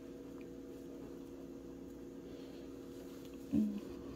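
Quiet room with a steady low hum, broken about three and a half seconds in by one short hummed 'mm' from a person.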